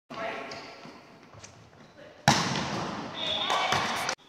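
Indoor volleyball play in a gym: players' voices, then a sharp smack of a ball strike about two seconds in, followed by more loud, echoing court noise.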